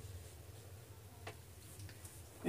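Faint marker writing on a whiteboard, with two light clicks of the tip against the board late on, over a low steady hum.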